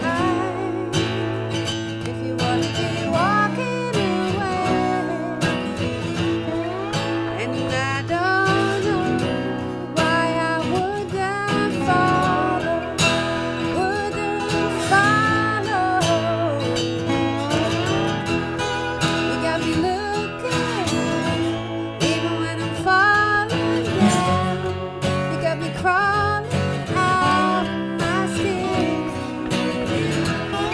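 Acoustic guitar strumming with a slide guitar playing gliding melody lines over it.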